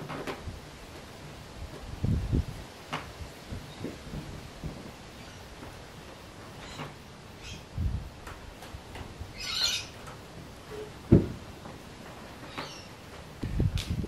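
Scattered soft low thumps of bare feet and hands shifting on a wooden plyo box during a bent-arm handstand push-up drill, the sharpest thump about eleven seconds in. Faint bird calls in the background.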